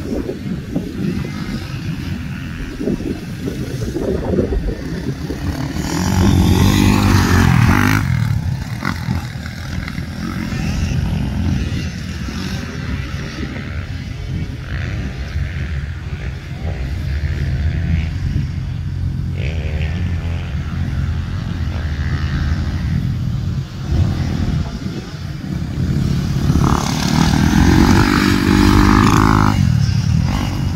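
Dirt bike engines running on a motocross track, rising and falling with the throttle. It is loudest when a bike passes close about six to eight seconds in, and again near the end as a red Honda CRF250RX four-stroke rides by.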